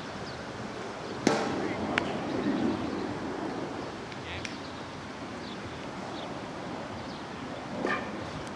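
A pitched wiffle ball lands with one sharp smack about a second in, followed by a smaller click and a brief swell of players' voices; another sharp tap comes near the end.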